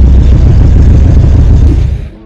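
Loud, steady low rumble of a 1991 Jeep Wrangler driving, engine and road noise heard from inside its cabin.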